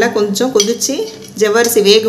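Speech: a person talking in Tamil, with no other sound standing out.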